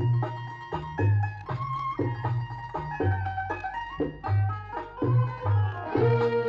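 Egyptian ensemble music in maqam Rast, in an instrumental passage: pitched melody instruments over a low hand drum beating a steady dance rhythm.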